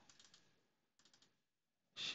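Faint computer mouse clicks in two quick groups about a second apart, likely double-clicks opening folders; otherwise near silence.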